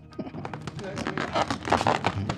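Low, indistinct talk over a run of small clicks and rustling. The rustling comes from people handling craft materials such as tape and balloons.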